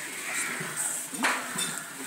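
Clinking and clattering of utensils against large aluminium cooking pots, with one sharp metal clank a little over a second in.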